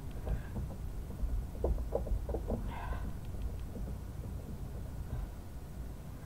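Light knocks and taps of a wood-mounted rubber stamp being pressed down by hand onto paper on a table, with a quick cluster of four or five about two seconds in.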